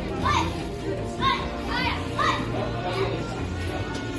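Children's voices calling out several short high-pitched calls over background music.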